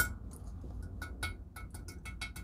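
A large chunk of pumice tapped with a thin metal tool: a quick, uneven string of light, tinny clinks, each with a short ring. The rock is mostly air pockets, which gives it this hollow, tinny sound.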